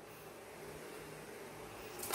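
Faint steady hiss of background noise, with no distinct sound standing out.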